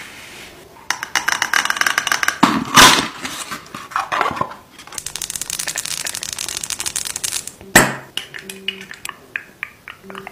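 Close-up ASMR handling sounds: fast scratching and crinkling with a few loud knocks, then long acrylic nails scratching and tapping on a plastic serum pump bottle, with one sharp click about eight seconds in.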